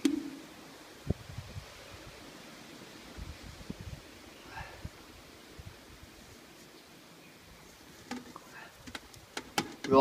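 Mostly quiet, with a few faint knocks and taps from a metal paint tin being handled and tipped into a plastic bucket, and a quick run of sharper clicks near the end.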